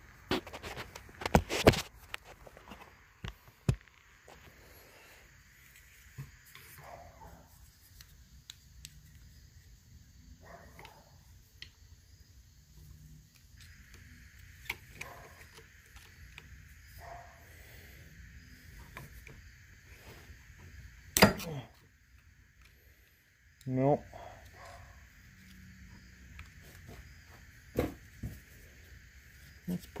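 Quiet hand-tool work on a hydraulic cylinder clamped in a vise: scattered clicks, taps and scrapes of a steel pick in the cylinder's port as a snap ring is worked toward another groove, with a few sharper metal knocks, the loudest about two-thirds of the way through.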